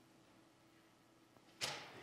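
Near silence: room tone, then about a second and a half in a short, sharp in-breath into a close headset microphone.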